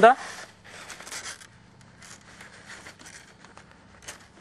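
Faint rustling and sliding of card and paper as mounted herbarium specimen sheets are slipped into a manila folder, with a few small taps.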